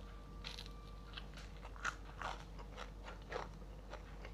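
Close-miked chewing of a mouthful of crunchy fried salted fish and rice: irregular crisp crunches and mouth clicks, with a few louder crunches about two and three seconds in.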